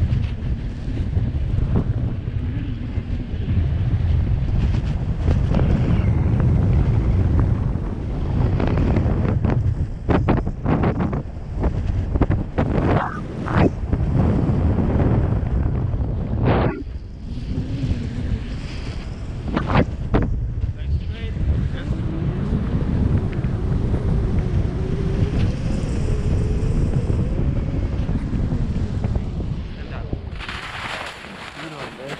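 Wind buffeting an action camera's microphone in flight under a tandem paraglider: a loud, steady low rumble with sharper gusts in the middle.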